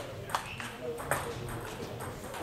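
Table tennis ball knocking off bat and table: two sharp clicks about three-quarters of a second apart, over the chatter and ball sounds of a busy hall.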